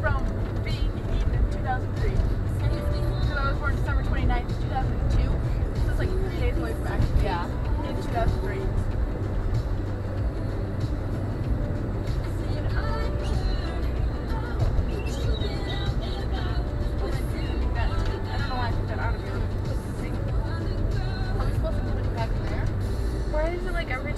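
Steady low rumble of a car's engine and tyres on the road, heard from inside the moving car's cabin, with faint voices and music over it.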